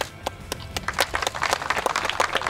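A champagne bottle strikes a boat's hull with a sharp knock right at the start, then hand clapping and applause build up and grow louder. A music bed plays faintly underneath.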